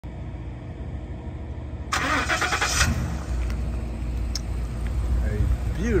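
A pickup truck's 6.2-litre gas V8 running at idle with a steady low rumble. About two seconds in there is a short burst of broad noise, and after it the engine's rumble is a little stronger.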